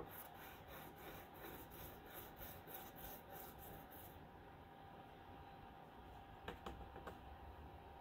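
Faint scratchy rubbing of a wet stick of sidewalk chalk on thin printer paper, in quick back-and-forth strokes of about five a second. The strokes stop about halfway through, and a couple of light taps come near the end.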